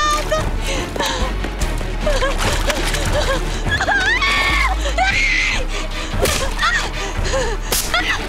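Tense film score with a low drone, under the gasps, cries and thuds of a fight.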